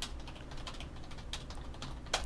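Computer keyboard being typed on: a run of light, irregular key clicks over a faint low hum.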